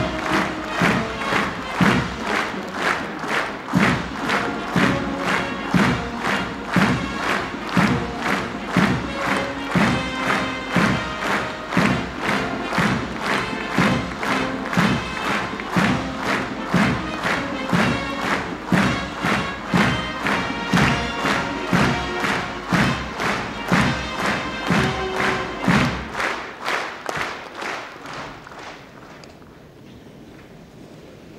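A large hall of people applauding, clapping in unison at about two claps a second over music. It fades away in the last few seconds.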